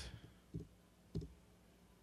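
Two faint clicks from operating a computer, one about half a second in and another just after a second.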